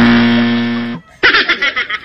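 A flat electronic wrong-answer buzzer sounds for about a second and cuts off, marking the answer as incorrect. About a second in, a burst of high-pitched laughter follows.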